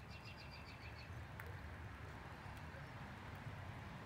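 A bird's rapid trill of short high chirps for about the first second, faint over a low steady rumble, with a few faint clicks later on.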